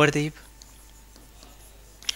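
Faint scratching and light taps of a stylus writing on an interactive display screen, just after a man finishes a word at the start.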